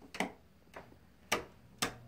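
Footsteps on a wooden floor: four sharp clicks about half a second apart, the second one faint.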